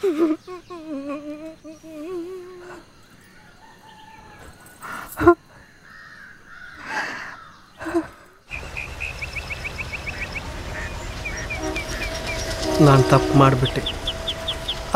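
A drawn-out, wavering cry-like sound and a few sharp knocks. Then, after a cut, the steady rush of a shallow river with birds chirping in quick runs.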